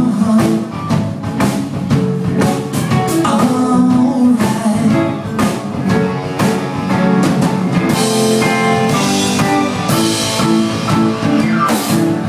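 Live rock band playing: electric guitars over a drum kit keeping a steady beat, the cymbals growing brighter about two-thirds of the way through.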